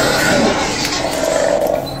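Loud, dense horror-style sound effect, a noisy rumbling roar laid over a logo card, starting to fade in the last half second.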